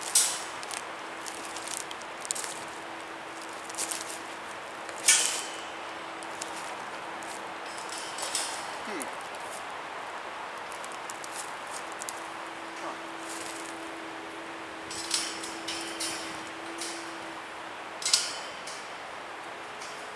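Heavy galvanized-wire cattle panel clinking and rattling as it is wrestled by hand into position against metal T-stakes, with a few sharp metallic clinks: one right at the start, one about five seconds in, and others near the end.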